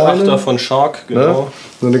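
Speech only: a man talking in German, with a short pause near the end.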